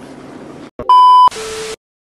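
Glitch-transition sound effect: a loud, steady 1 kHz test-tone beep about a second in, lasting under half a second, then a brief burst of TV static hiss over a lower hum that cuts off suddenly into silence.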